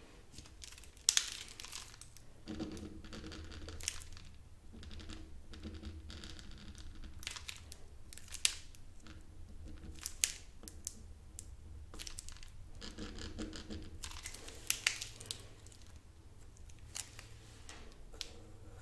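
Felt-tip marker strokes scratching across paper, broken by several sharp clicks of marker caps being pulled off and snapped back on. The loudest click comes about a second in, with others near the middle and around fifteen seconds.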